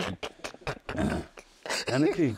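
A man's voice in a pause between phrases: a few short mouth clicks and a brief low murmured sound, with speaking starting again near the end.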